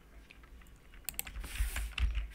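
Computer keyboard typing: a few quick, faint keystrokes as a short word is typed, the clicks bunched after about a second.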